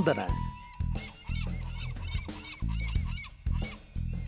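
Cartoon bird sound effects for a flying flock of doves: many short, repeated calls over background music with low held notes.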